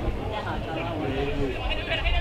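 Distant shouts and calls from footballers and spectators, with one drawn-out call in the middle and higher-pitched shouting near the end.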